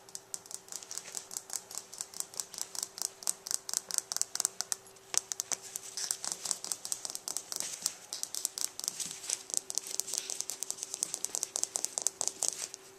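A puppy playing at close range, making a rapid run of short sharp clicks and scratches, several a second, with a brief lull about five seconds in.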